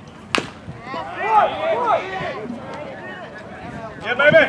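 A bat hitting a pitched baseball: a single sharp crack, then voices calling out about a second later.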